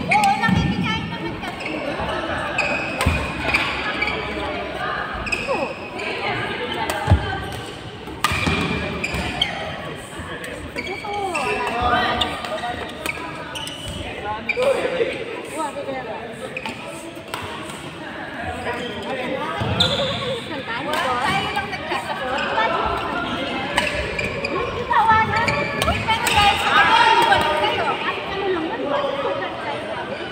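Badminton rackets striking a shuttlecock in a doubles rally, with a sharp smash hit right at the start and scattered knocks and footfalls on the court after it, echoing in a large hall.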